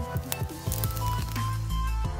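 Background music with a steady beat and a deep bass line.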